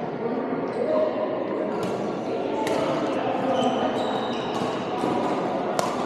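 Badminton rackets smacking a shuttlecock in rallies, a few sharp hits with the loudest near the end, over the echoing chatter of players in a large sports hall. Brief high squeaks of court shoes come in the middle.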